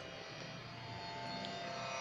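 Faint, steady musical drone: many held tones sounding together without change, the accompaniment for the sung ghazal.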